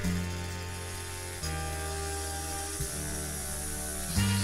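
Instrumental music: sustained chords over a heavy bass, changing chord about every second and a half.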